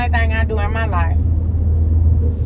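Steady low rumble of engine and road noise inside a vehicle's cabin while it is being driven. A woman's voice finishes a word in the first second, and the rumble carries on alone after that.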